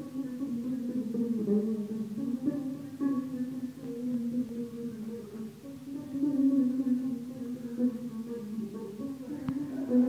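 Electric bass guitar played solo in long held notes that waver and shift in pitch, imitating the cries of a weird creature.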